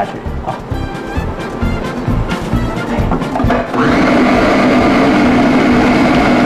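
Electric food processor starting up about two-thirds of the way in and running steadily, puréeing banana with sugar and a pinch of salt.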